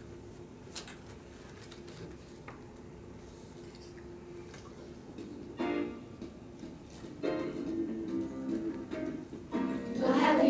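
Piano introduction to a children's song. It starts with faint held notes and turns to louder chords from a little past halfway.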